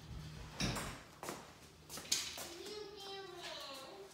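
A small child calling out in one long, drawn-out call in the second half, after a few soft knocks.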